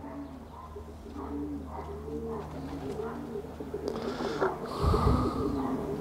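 Racing pigeon cooing: a run of short, low coos repeating over a steady low hum. A brief louder rustle comes about five seconds in.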